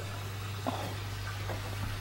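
Steady low hum under faint hiss in a pause between words, with a faint click about two-thirds of a second in.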